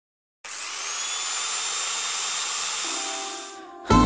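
An electric motor starting about half a second in: a high whine that rises briefly as it spins up, then runs steady with a loud hiss before fading out near the end. Guitar music comes in at the very end.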